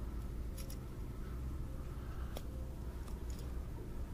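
A steady low rumble with a few faint, soft clicks and rustles from handling a bass at the water's edge.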